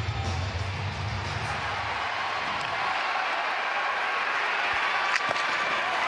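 Hockey arena crowd noise building as a shootout attempt comes in on goal, over arena music that is heavy in the bass for the first two seconds. A single sharp knock about five seconds in, as the shot is taken on the goaltender.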